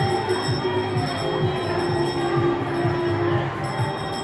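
Funfair ambience: ride music with a fast, steady beat over crowd chatter and the mechanical rumble of the rides.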